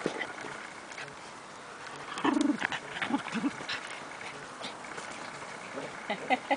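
Shetland sheepdogs and puppies playing, with a cluster of short dog cries about two to three and a half seconds in, the first the loudest.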